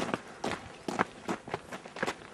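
Footsteps on a forest trail while walking downhill: a quick, uneven series of steps.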